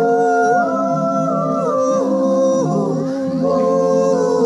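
Singing voice into a microphone, holding long sustained notes that step and slide between pitches, over steady lower accompanying tones.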